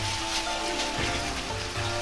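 Plastic cling film crackling as hands handle it to wrap dough around a filling, over soft background music with long held notes.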